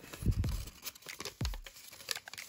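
Origami paper crinkling and crackling in the hands as a flap is popped up and pressed into shape, with a couple of dull low thumps.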